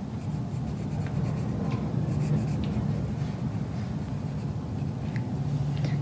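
Colored pencil lightly shading on sketchbook paper: soft, quick scratching strokes over a low steady hum.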